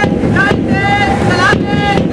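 Loud wind rumble on the microphone, with a voice calling out in long, drawn-out pitched notes over it and a short thump about once a second.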